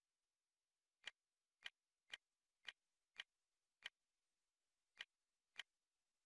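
Media player menu navigation clicks: eight short, sharp clicks, one for each step down the folder list. They come about half a second apart, with a pause of about a second after the sixth.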